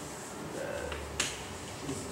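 Quiet room tone with one sharp click a little past the middle.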